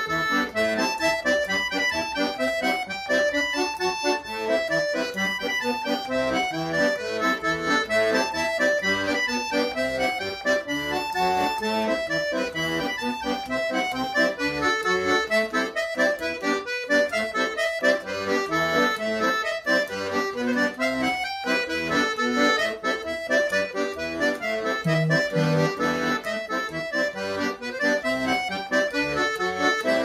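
Piano accordion played solo: a traditional polka tune, melody over the left-hand bass and chords.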